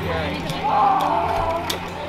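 Unclear voices with music playing in the background, one voice held and gliding briefly about half a second in; two short sharp clicks.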